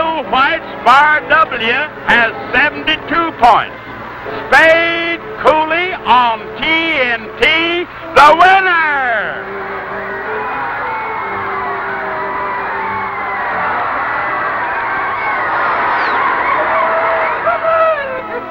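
Grandstand crowd cheering: separate whoops and yells in the first half, merging about halfway into a continuous roar of voices that swells near the end.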